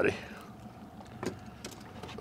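A few light clicks and knocks of a small, flapping brook trout and a metal tool being handled against an aluminium boat, over a faint steady hum.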